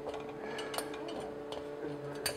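Faint, sparse clicks and taps of seat-diaphragm clips being pushed into a metal seat frame, over a steady hum.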